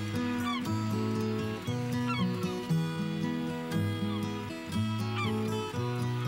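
Opening theme music: a melody of held notes stepping over a steady bass line, with short high gliding cries recurring every second or two.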